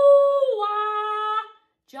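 A woman singing a demonstration of the E-ooh-ah exercise with over-exaggerated mouth shapes. A high held "ooh" with rounded lips steps down about half a second in to a lower held "ah", then stops after about a second and a half.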